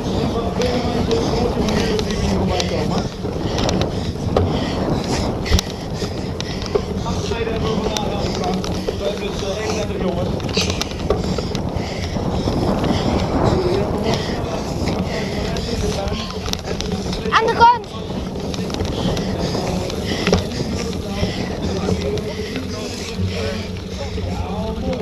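A bike ridden fast over a bumpy, muddy grass path, heard close up: a steady rumble of tyres with frequent small clicks and rattles of the bike, and wind on the microphone. Underneath, a distant announcer's voice carries, and a brief rising squeal comes about two thirds of the way through.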